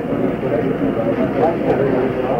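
Indistinct chatter of many people talking at once in a mission control room, with no single voice standing out.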